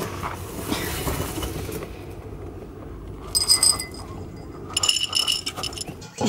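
A metal bin and its lid clinking and scraping against each other, with a short burst of metallic ringing about three seconds in and a longer one near the end, after a rustle of handling at the start.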